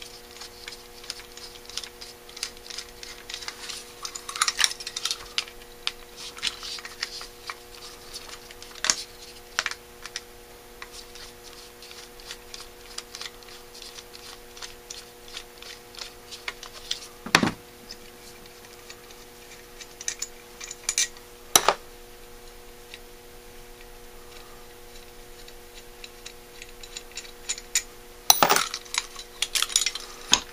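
Screwdriver turning out the screws of a Holley 1904 one-barrel carburetor and the cast throttle body being lifted off: light metal clicks and scrapes, with a few sharper clinks of metal parts in the second half.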